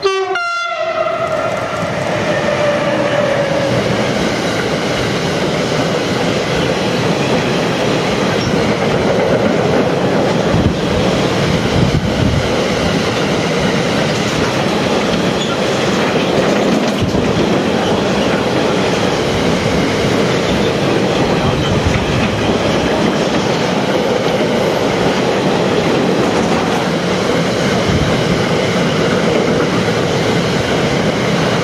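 A locomotive sounds its horn for about three seconds as it passes, the pitch falling slightly, then a long freight train of double-deck car-carrier wagons rolls by with steady rumbling and wheel clatter.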